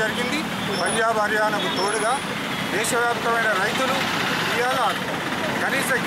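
A man speaking Telugu without pause, over a steady hum of street traffic.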